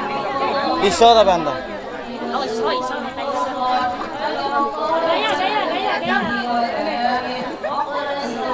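Wedding guests' chatter: many voices talking at once and overlapping, with no single speaker standing out.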